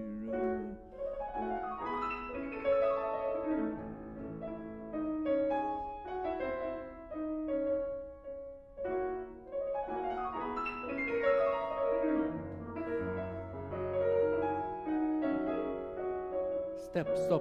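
Grand piano played in a flowing classical passage in polyphony, two melodic voices heard as separate lines, with a held bass note in the second half.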